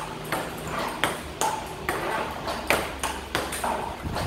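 Table tennis balls fired by a ball robot bouncing on the table in a quick, steady series of sharp pings, about two to three a second, some with a short ring. A low steady hum, likely the robot running, sits underneath.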